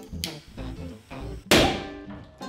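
A balloon filled with nitromethane and air bursts and ignites about one and a half seconds in: a sudden loud bang that fades over about half a second, over background guitar music.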